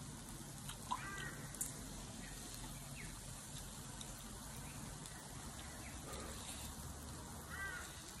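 Pork belly sizzling faintly on a tabletop mukata grill pan, a steady low hiss, with a few short bird calls about a second in and again near the end, and a couple of light clicks of chopsticks.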